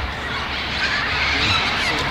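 Birds calling, with a few short chirps near the end, over a steady outdoor background hiss.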